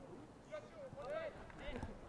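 Faint voices calling out and talking at a distance, with several short spoken bursts through the middle and latter part.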